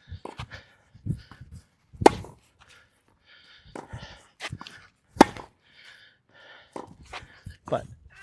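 Tennis ball struck back and forth in a rally by a racket freshly strung with Kirschbaum Flash 1.25 mm string: sharp pops of ball on strings, the two loudest about two and five seconds in and another just before the end, with fainter knocks between.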